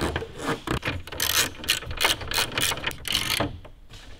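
Hard plastic grille and radar-sensor housing parts clicking and rattling in quick succession as they are handled and clipped together, busiest from about a second in until near the end.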